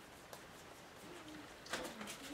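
Quiet room tone with a faint short low tone about a second in; near the end a wide hake brush starts sweeping paint across wet watercolour paper with a soft, papery brushing rustle.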